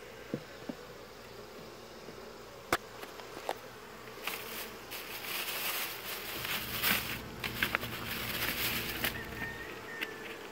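Honey bees buzzing in a steady hum over an open hive. A few sharp knocks come early on, and from about four to nine seconds in there is scraping and rustling as wooden hive parts are handled.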